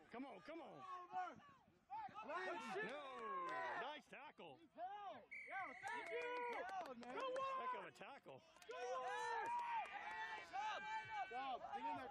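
Rugby players shouting and calling out across the field, several voices overlapping. A brief steady high-pitched tone sounds about halfway through.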